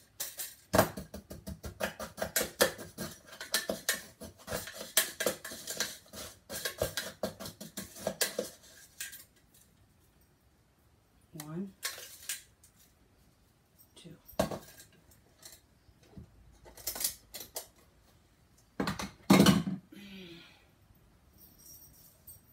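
Metal spoon clinking and scraping against a glass jar as salt is measured out: a dense run of rapid clinks for about eight seconds, then a handful of separate knocks and clinks, the loudest a little before the end.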